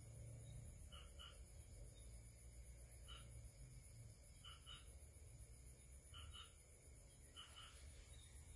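Near silence: low room hum with faint short chirps from a small animal, mostly in pairs, recurring about every one to two seconds.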